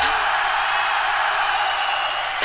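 House/trance record played from vinyl, in a breakdown: the drums drop out and a steady, hissy mid-pitched wash of sound carries on alone.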